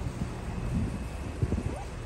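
Wind buffeting a phone microphone outdoors, with a scatter of irregular soft knocks.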